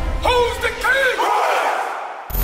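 A man shouting with pitch rising and falling, over a crowd of men calling out, while a music bass line underneath cuts out a little past the middle.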